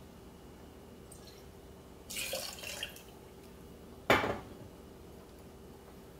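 Tequila being poured for a cocktail: a short splash of liquid about two seconds in, then a single sharp clink of glass or metal about four seconds in.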